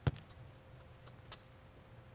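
A football kicked once with the inside of the foot: a single sharp thump right at the start, followed by a few faint ticks.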